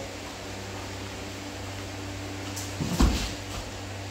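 A single dull thump about three seconds in, with a few faint rustles and clicks around it: bare feet and bodies of two grapplers shifting and landing on foam mats during a jiu-jitsu drill. Under it runs the steady low hum of a floor fan.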